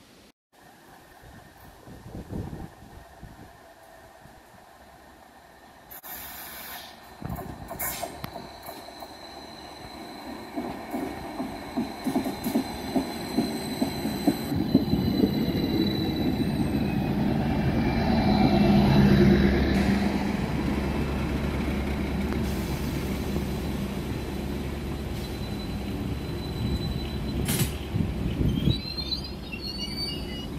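Class 755 bi-mode train drawing into the platform. A rumble builds to its loudest about two-thirds of the way through, with a thin high whine of the wheels or brakes over it. The train's engines then keep running steadily as it stands.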